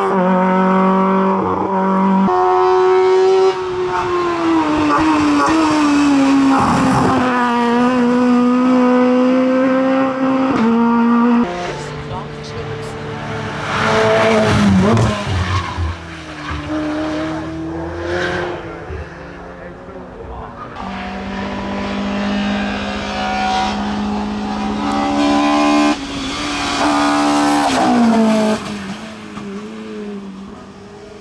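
Hill-climb race cars accelerating hard up the course one after another, engines revving high and changing up through the gears, the pitch stepping down at each shift.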